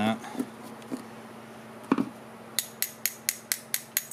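A knock, then a quick, even run of about nine light metal-on-metal clicks, roughly four a second, from a screwdriver and the small brass main jet being worked out of a golf-cart carburetor body.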